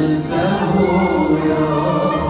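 Live Arabic Good Friday hymn: a male voice singing long, ornamented held notes over a small ensemble of violin, qanun and keyboard.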